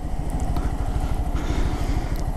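Honda Grom's 125 cc single-cylinder engine running steadily as the motorcycle rolls at low speed, with wind and road noise.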